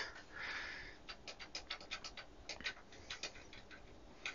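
Faint rapid clicking, about six clicks a second for roughly two and a half seconds, from repeated key presses on the front panel of an Advantest R6142 programmable DC voltage/current generator, stepping its current output up toward its 120 mA limit. A brief soft rustle of the hand coming to the panel comes just before the clicks.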